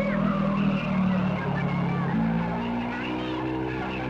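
Film soundtrack of a vehicle driving, with skidding tyre noise and a shouted voice over sustained dramatic music chords that shift about two seconds in.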